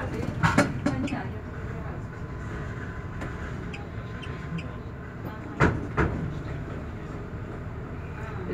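Tram rolling slowly, heard from the driver's cab: a steady low rumble and hum of the running gear and electrics. Sharp clicks come about half a second in and twice more around five and a half to six seconds.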